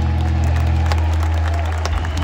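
A live band's final chord ringing out over a held low bass note, its upper tones fading, as the audience starts to clap and cheer.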